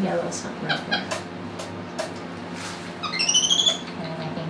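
An animal giving a quick run of high-pitched, rising squeaks lasting under a second near the end, after a few soft clicks and rustles.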